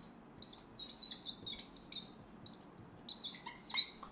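Marker pen squeaking on a whiteboard in short, irregular high strokes as a word is written, with a louder cluster of squeaks near the end.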